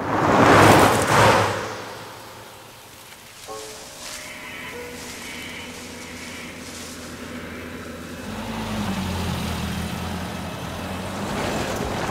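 An SUV driving by with a loud rush of road and engine noise in the first second or so. Then a quieter low vehicle rumble under a few sparse held music tones. The rumble grows again over the last few seconds as the vehicle comes near.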